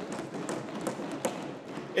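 A brief reaction from the members in the debating chamber: a steady murmur of many voices, with scattered taps and knocks.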